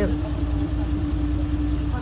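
A steady low mechanical hum with one constant droning note, like a motor running nearby.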